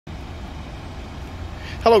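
Steady outdoor background noise with a low rumble, then a man's voice saying "Hello" at the very end.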